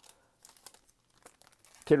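Foil wrapper of a Topps Gallery basketball card pack being torn open, with faint scattered crinkles as the cards are pulled out. A spoken word comes in near the end.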